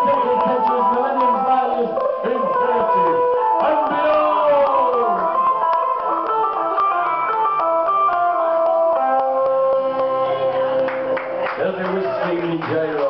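Live folk band playing acoustic and electric guitar, with voices over the music.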